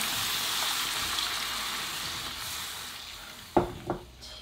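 Mapo sauce of TVP sizzling in a hot pan just after water has been poured in, the hiss slowly dying down as the water takes up the heat. Near the end a wooden spoon knocks twice against the pan.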